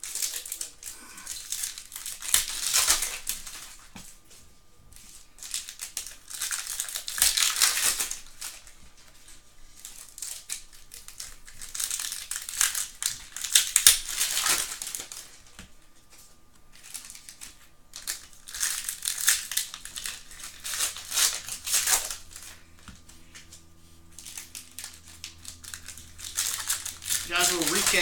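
Foil trading-card packs crinkling as they are handled and torn open by hand. The rustle comes in bursts of two to three seconds, about every five or six seconds, one pack after another.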